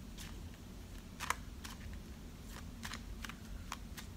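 Tarot cards being handled: light, irregular clicks and taps, about seven of them, over a low steady room hum.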